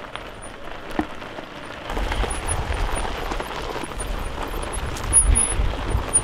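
Fat tyres of an off-road wheelchair built from two e-bikes rolling over a gravel trail, a steady noisy hiss, with a single click about a second in and a low rumble from about two seconds in.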